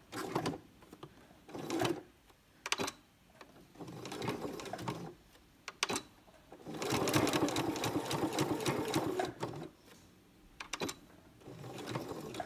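Domestic electric sewing machine stitching a short seam in stop-start runs: a few brief bursts, then a run of about three seconds in the second half, with sharp clicks in the pauses. The seam is locked with backstitching at its start and end.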